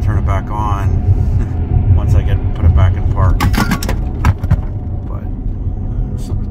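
Steady low road and tyre rumble inside a Tesla's cabin as it drives onto the highway exit ramp, with a quick cluster of sharp clicks about three and a half seconds in.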